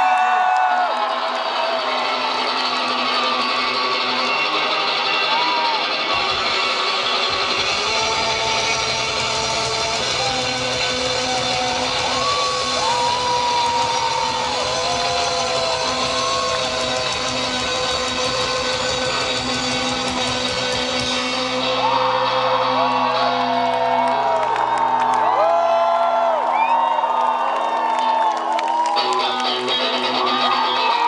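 Indie rock band playing live through a large PA, recorded from the audience: electric guitar with bass and drums. The bass and drums come in about seven seconds in, and the band grows fuller and louder about twenty seconds in.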